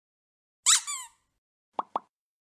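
Animated-logo sound effects: a short bright chime-like sweep falling in pitch, then about a second later two quick pitched plops in rapid succession.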